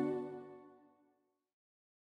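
Closing chord of electronic organ played in Electone sounds, several held notes dying away within about a second.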